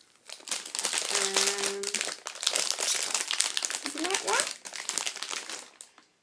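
Crinkly plastic packet of marrowbone roll dog treats crackling and rustling as it is handled and opened. A brief held hum and a couple of short rising voice sounds come in between.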